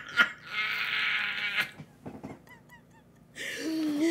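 A person's breathy, wheezing laugh, about a second long, with a honking quality. A few faint voice sounds follow, and speech starts again near the end.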